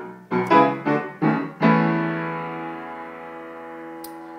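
Upright piano chords: five struck in quick succession in the first second and a half, then a final chord held and left to ring out, slowly fading.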